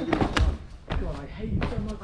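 Voices calling out over a few dull thuds of feet landing and pushing off paving and a brick wall.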